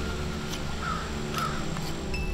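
A crow cawing twice in quick succession, about a second in, over a low sustained music bed.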